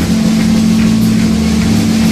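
Loud live rock band music: an amplified, distorted note is held as one steady low drone, with faint cymbal-like hits over it.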